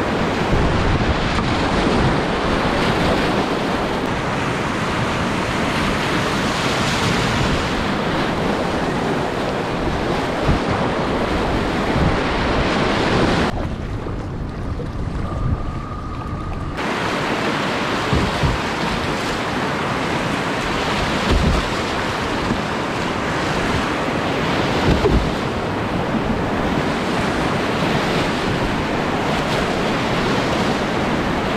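Rushing whitewater of river rapids heard from a kayak, a steady loud roar with wind buffeting the microphone and occasional low thumps. For about three seconds in the middle the sound turns muffled.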